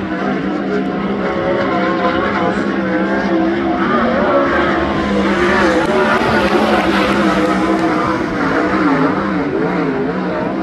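Race car engine running hard on a qualifying lap, its pitch rising and falling as it goes around the track.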